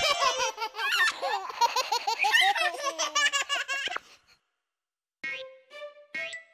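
Baby laughter, a string of high giggles and belly laughs lasting about four seconds. It stops, and near the end a few short musical notes sound.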